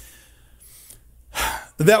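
A man draws a sharp breath close to the microphone about a second and a half in, just before he resumes speaking, with a small mouth click at the start.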